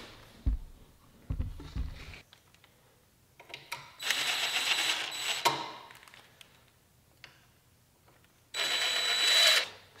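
Cordless power screwdriver running twice, for about a second and a half and then about a second, unscrewing fasteners on a scooter's frame, after a few low knocks early on.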